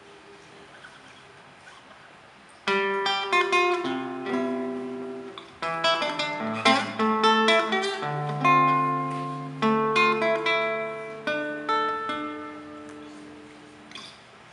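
Plucked acoustic strings, guitar with charango-family instruments, start a chamamé about three seconds in after a quiet opening. They play phrases of ringing chords and single notes that die away, pause briefly, and start again.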